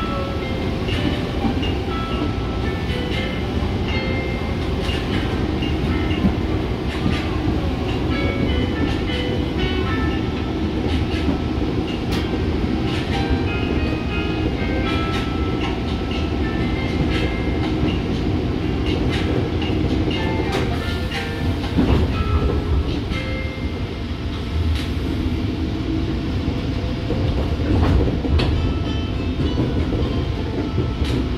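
KRL Commuterline electric commuter train running along the track, heard from inside the car: a steady rumble with irregular clicks from the wheels and track, swelling louder briefly twice in the second half.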